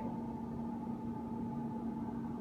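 A steady background hum with two constant tones, a low one and a higher one, over a faint even hiss.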